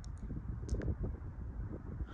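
Wind buffeting the microphone: a low, uneven rumble, with a faint tick a little under a second in.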